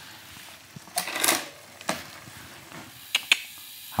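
Road bike drivetrain turned by hand and shifted: the chain running, with a noisy burst about a second in and a few sharp clicks as the chain moves across the rear sprockets and up onto the big chainring. The front shift goes cleanly now that the slack has been taken out of the front derailleur cable with the inline barrel adjuster.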